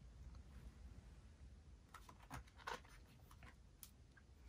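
Near silence, with a few faint rustles and taps of paper in the second half as a picture book's page is handled and turned.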